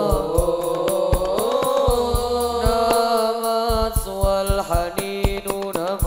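A boy's solo voice singing Islamic sholawat into a microphone, drawing out long, wavering melismatic lines, over regular hadrah frame-drum strokes.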